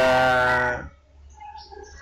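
A long, low-pitched call held at a nearly steady pitch that breaks off a little under a second in, followed by faint, scattered sounds.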